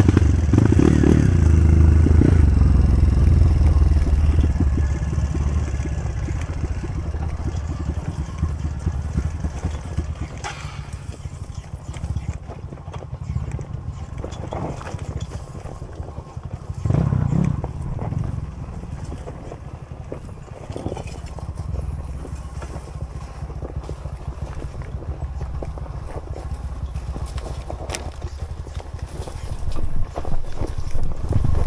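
Dirt bike engine on a rocky trail: throttled up hard in the first few seconds, then running at lower revs with a second short burst of throttle a little past halfway. Occasional knocks as the bike goes over the rocks.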